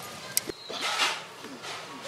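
Faint voices of a seated group outdoors, with a sharp click about a third of a second in and a short low thump just after it.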